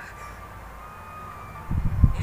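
Anime soundtrack sound effects: faint steady high tones over a low hum, then a burst of loud, deep rumbling thuds near the end.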